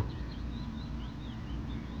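Faint birdsong: thin, wavering high chirps from small birds over a steady low outdoor background rumble.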